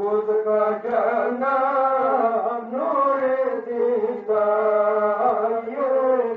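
A voice chanting a Pashto noha, the lament recited at Muharram mourning, in a melodic line of long held notes that waver slightly.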